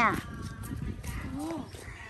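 A woman's voice finishing a phrase, then low outdoor background with a brief faint vocal sound near the middle.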